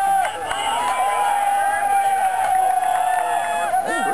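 Spectators yelling together, many voices overlapping, with one voice holding a single long shout that sinks slightly in pitch over about four seconds.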